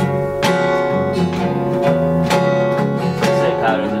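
Guitar being strummed, a chord struck about every half second as an intro, with a voice coming in to sing at the very end.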